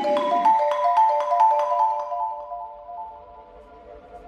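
Marimba One marimba played with mallets: a quick run of single struck notes, about four or five a second, that thins out after about two seconds and dies away into faint ringing of the bars.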